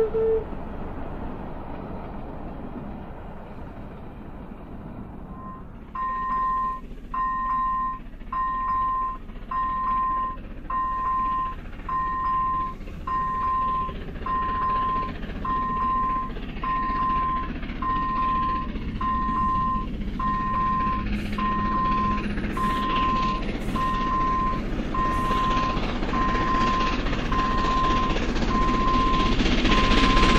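A steam whistle's note cuts off at the start. From about six seconds in, a level-crossing warning signal beeps steadily about once a second. Meanwhile the running noise of class 556 steam locomotive 556.036 and its train grows louder as it approaches the crossing.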